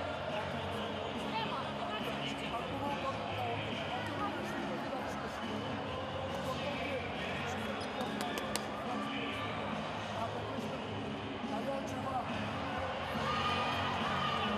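Indoor sports-hall sound during a handball time-out: a coach's voice talking to his players in the huddle, irregular thuds like a ball bouncing on the court, and steady music in the background.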